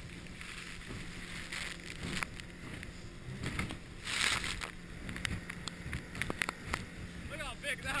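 Boat at sea: a steady low engine hum under wind and water noise, with a louder rush of noise about four seconds in and a run of sharp taps after it.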